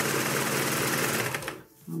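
Janome AirThread 2000D serger sewing a rolled edge at speed, a fast, even buzz that stops about one and a half seconds in.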